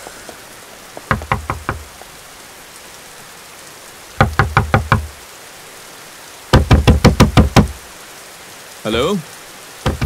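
Knuckles rapping on a heavy wooden double door in three rounds of quick knocks: a short round of about five knocks, a longer one of about seven, then the loudest and longest of about ten. Steady rain hisses behind, and a short call is heard near the end.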